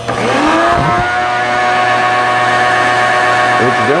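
An electric motor spins up with a rising whine over the first second, then runs at a steady pitch.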